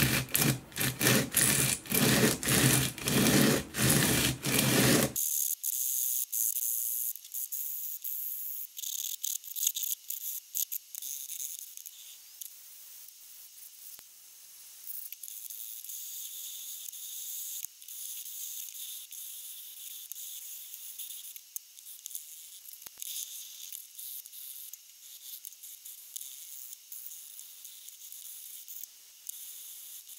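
Forged carbon fibre part rubbed back and forth by hand on a sheet of coarse sandpaper: a rasping scratch of quick, even strokes. About five seconds in, this gives way to a thin, high-pitched scratching hiss that carries on quieter to the end.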